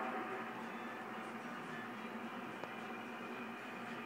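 Steady electrical hiss with a faint hum from the idle CB radio and amplifier setup, with the transmitter unkeyed and the wattmeter at zero.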